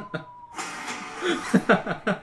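A few men chuckling and laughing over a movie trailer's audio. A high steady tone cuts off about half a second in, followed by a rushing noise, with short bursts of laughter near the end.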